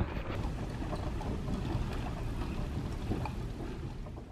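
Wind noise on a handheld camera's microphone while riding a bicycle: a steady, low rushing rumble.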